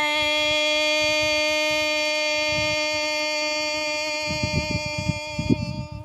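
A woman singing Hmong kwv txhiaj, holding one long, steady, unaccompanied note after a dip in pitch, fading slightly and ending near the end.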